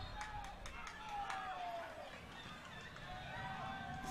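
Faint stadium ambience at a soccer match: a low crowd murmur with distant voices calling out, one drawn-out call falling in pitch about a second in.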